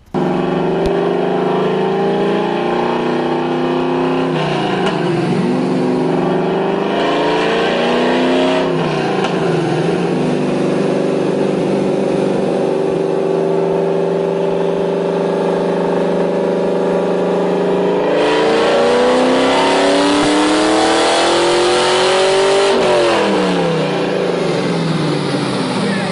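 Cammed LS V8 in a fourth-generation Pontiac Firebird running on a chassis dyno. The revs dip and climb twice early on, then hold steady. About eighteen seconds in it grows louder and climbs through a long pull, peaking and dropping back off near the end.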